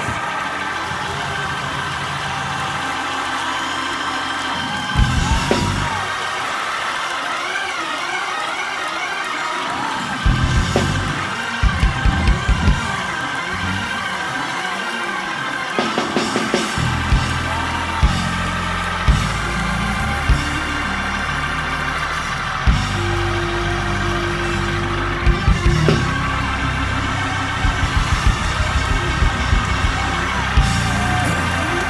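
Gospel church band music: sustained keyboard chords over a bass line, with sharp percussive hits joining in about five seconds in and coming frequently from about ten seconds. Voices shout and cheer over the music.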